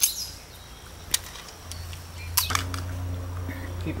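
Sharp metallic clicks of a Bersa Thunder .22 LR pistol being handled to clear a malfunction, one at the start and one about a second in. Past the halfway point a steady low hum sets in.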